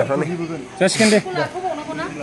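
Speech: people talking, with a short hiss-like consonant about a second in.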